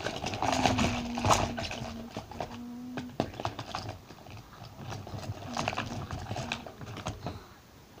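Small items and plastic packaging being handled and unwrapped close to the microphone: crinkling, rustling and little clicks, busiest in the first second or two and again near the end. A low steady hum sounds for the first three seconds.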